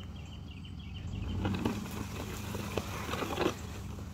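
Small Ford Ranger pickup running low and steady as it drags a chained tree trunk over gravel and dry leaves. A crunching, crackling scrape of wood on ground comes in about a second in.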